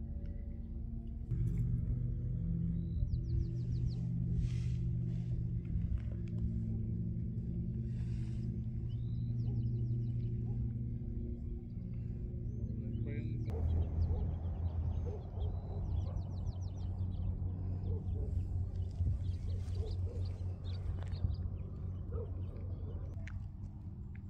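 Ambient background music of sustained low drone tones, which shift about halfway through. Short bird chirps and trills sound over it now and then.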